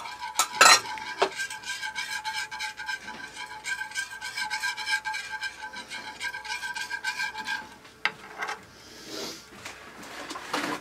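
A wire whisk stirring sauce in a metal skillet, with quick scraping strokes against the pan and a steady metallic ringing. The ringing and scraping stop about three-quarters of the way through, followed by a couple of knocks.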